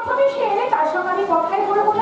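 A woman's voice delivering stage lines in long, drawn-out phrases with gliding pitch, amplified through a hanging stage microphone.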